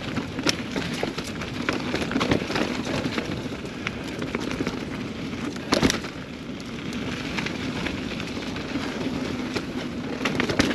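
Mountain bike rolling fast down a rocky, rooty dirt trail: steady tyre noise on the dirt with frequent rattles and clicks from the bike, and one louder knock about six seconds in.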